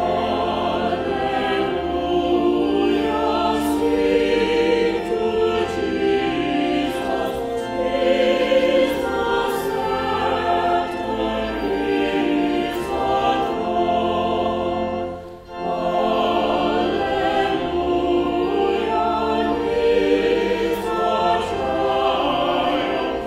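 A choir singing a hymn with organ accompaniment, the organ holding sustained bass notes under the voices, with a brief break between phrases about 15 seconds in.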